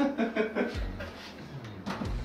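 A single sharp knock shortly before the end as a tall floor-standing tower speaker cabinet is set down in the corner, after some quieter handling sounds.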